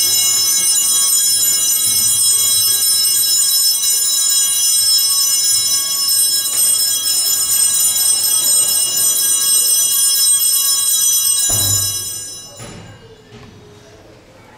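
Altar bells rung without pause as the monstrance is raised in the Benediction blessing, a loud, steady, bright ringing that cuts off suddenly about twelve and a half seconds in.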